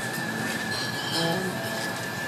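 Steady high whistle from the venue's mechanical systems: one unchanging tone held over a haze of room noise.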